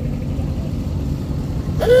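Dune buggy engines running as buggies drive up the road, a low steady rumble. Just before the end a horn starts sounding, one flat steady note.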